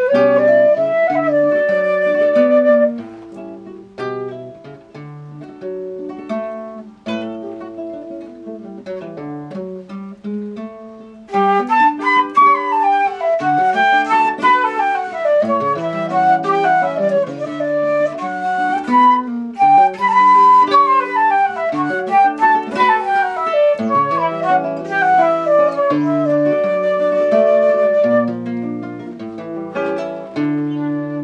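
Transverse flute and nylon-string guitar playing a guajira together. After a short flute phrase the music drops to a softer passage of mostly lower notes, and from about eleven seconds in fast running scales rise and fall loudly over the guitar.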